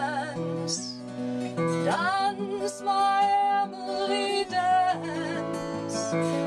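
A woman singing a slow folk song, with vibrato on held notes, to acoustic guitar accompaniment.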